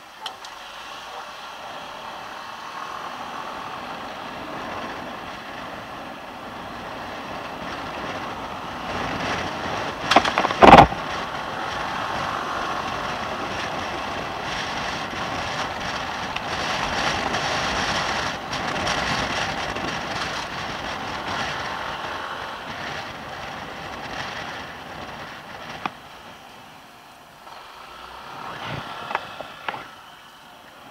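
Riding noise on a Yamaha NMAX 155 scooter: wind and road rush over the camera microphone, growing louder through the middle as it gathers speed and easing off near the end. A single sharp thump about ten seconds in is the loudest sound.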